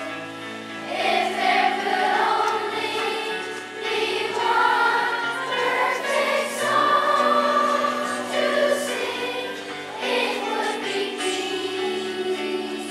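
A children's choir singing together in held, changing notes.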